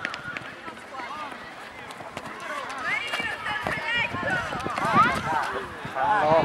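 Girls' high voices calling and shouting to each other during a small-sided football game, loudest about five seconds in, over the patter of players running on artificial turf and scattered short knocks of the ball being kicked.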